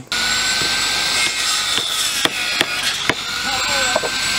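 Construction-site ambience with an electric circular saw running, a steady high whine, and several sharp knocks of wood pieces being handled.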